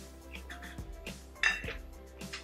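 Chopsticks clinking against a ceramic noodle bowl, with one sharp clink about one and a half seconds in, over soft background music.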